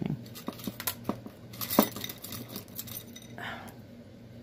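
Close-up handling sounds of cross-stitch work: small clicks and ticks of a needle and floss being worked over stiff aida fabric, with one sharper click a little under two seconds in and a brief soft rustle near the end.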